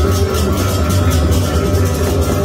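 Balinese gamelan music accompanying a temple dance, with a quick, even beat of strokes over steady sustained tones.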